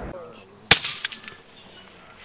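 A single rifle shot about two-thirds of a second in, sharp and loud, with a fading echo trailing off for most of a second.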